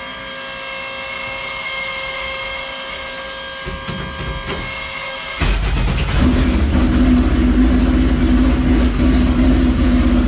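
The race car's engine catching and running: a steady whine, a little rough turning-over, then about five seconds in the engine fires and settles into a loud, steady run, heard from the driver's seat.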